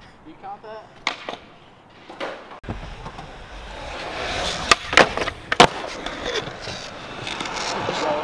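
Skateboard wheels rolling on concrete, the rumble building from about a third of the way in, with three loud sharp clacks of the board hitting the ground around the middle. A couple of lighter knocks come earlier.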